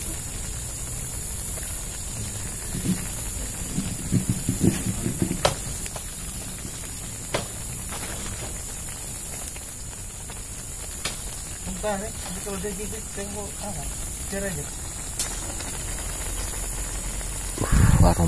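A pan of meat and tomato stew simmering in its liquid over a wood fire, with a steady high hiss as it cooks down toward dry. A few sharp crackles come from the fire.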